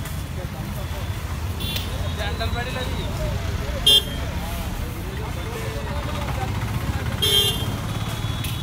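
Street traffic noise, a steady low rumble with faint voices, broken by short vehicle horn toots about two, four and seven seconds in, the one near four seconds the loudest.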